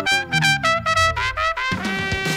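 Toy trumpet blown in a quick run of short blasts, with a lower tone sliding steadily down beneath them that cuts off near the end.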